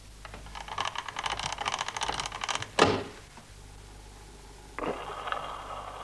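A rapid run of evenly spaced clicks ends in a sharp knock. Near the end a wind-up gramophone starts playing a 78 rpm record, with thin, narrow-band sound.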